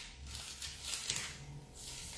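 Pages of a Bible being turned, a couple of soft papery rustles.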